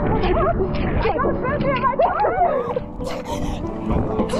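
Young women yelping and wailing in pain, their voices sliding up and down in pitch, as they run barefoot over sun-hot concrete that burns their blistered feet. A low rumble of wind on the microphone runs underneath.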